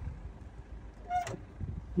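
Low steady rumble from a 1.8-tonne mini excavator, with one short beep-like tone and a click about a second in as its safety lever is raised.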